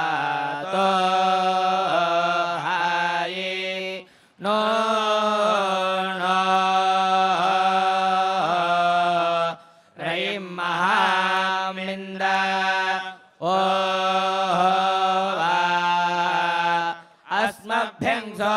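Male Vedic priests chanting Veda mantras together in unison, held close to one pitch with small rises and falls. They break off briefly for breath about every four to five seconds.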